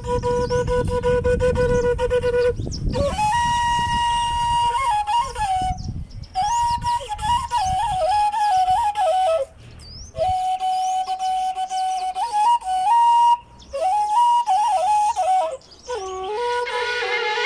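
Washint, the Ethiopian end-blown flute, played solo: a slow melody of long held notes and short ornamented runs, broken by brief pauses for breath every few seconds. A low rumble sits under the first half.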